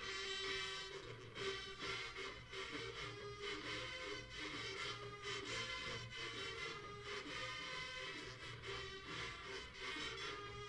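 College marching band playing a brass-heavy tune over a steady drum beat.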